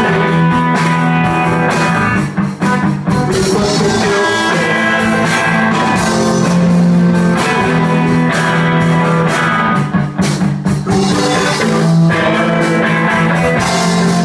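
Live rock band playing: electric guitar and drum kit, loud and continuous, with short dips in level about two and a half and ten seconds in.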